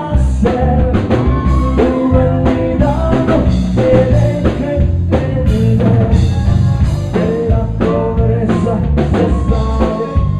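Live Tejano band playing a song: accordion melody over electric bass, drum kit and congas, loud and continuous.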